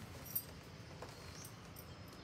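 Quiet background with a soft knock about a third of a second in and a fainter one about a second in, from a puppy stepping onto a raised cot bed on a wooden deck. A faint thin high tone sets in about midway.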